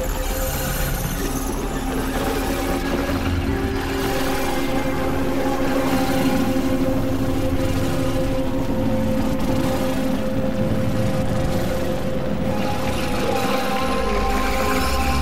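Experimental synthesizer drone music: several steady held tones layered over a dense, rumbling low noise, with no beat. Tones drop out and new ones come in now and then.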